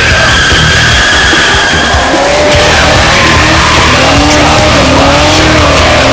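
Camaro burnout: the rear tyres squeal in a long steady screech for the first two and a half seconds, over the V8 engine at high revs with a wavering note later on. Loud music plays over it.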